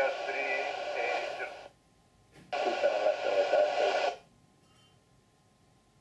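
Air traffic control radio: two short voice transmissions with a click before the second, the second ending about four seconds in.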